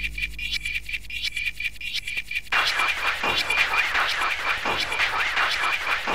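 Tribal freetekno track played from a 12-inch vinyl record, in a stripped-back passage: bass and mid-range drop out, leaving a steady ticking hi-hat pattern. About two and a half seconds in, a fuller layer returns with repeated short rising and falling synth sweeps over a steady high tone.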